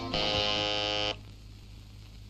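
Electric doorbell buzzer sounding one steady, harsh buzz for about a second, then cutting off suddenly as the button is released.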